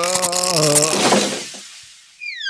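Cartoon whoosh sound effect: a held pitched tone over a rushing swish that fades out over about a second and a half as a character zips out of the scene.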